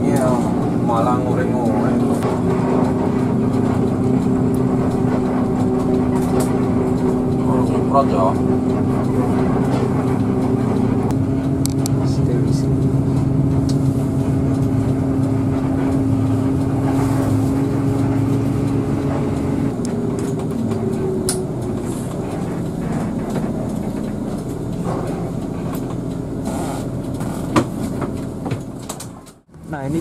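Inside a Hino RK8 bus creeping around a terminal: a steady drone from its diesel engine and cabin, its pitch shifting about two-thirds of the way through. The sound cuts out briefly just before the end.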